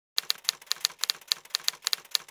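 Typing sound effect: rapid, irregular typewriter-style key clicks, about six a second, accompanying on-screen text being typed out.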